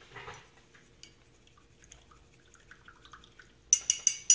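A soft brush stroke on paper at the start, faint small taps through the middle, then near the end a quick run of sharp, ringing clinks from a paintbrush knocking against the hard watercolour palette as the painter changes brushes and the palette is moved.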